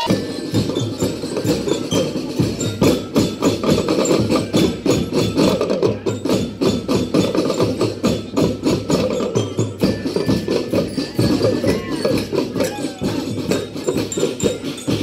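A marching drum band playing: a dense, even rhythm of snare and bass drums, with a melody of higher notes over the drums.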